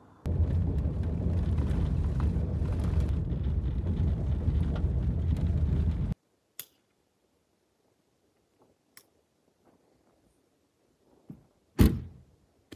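Road noise inside a Subaru Outback's cabin while it drives on a dirt road: a loud, steady low rumble of tyres and engine, which cuts off suddenly about six seconds in. Then it is near silent apart from a few faint clicks, and near the end there is one loud thump as the car's rear liftgate is shut.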